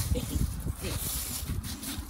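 Rumbling wind and handling noise on a phone microphone as the camera is moved, with a faint voice underneath.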